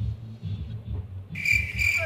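Cricket chirping, a high pulsing trill about three chirps a second, starting abruptly about a second and a half in after a short lull. It is the cricket-chirp sound effect that variety shows use to mark an awkward silence.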